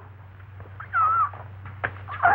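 A young woman's short, high, wavering whimper about a second in, over a steady low hum from the old film soundtrack, with a sharp click near the end.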